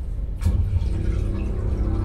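Dolby Atmos demo soundtrack played over a Hisense TV and its Dolby Atmos FlexConnect wireless speakers and recorded binaurally in the room. A deep bass hit lands about half a second in, then a sustained chord swells in as the Dolby Atmos logo sting builds.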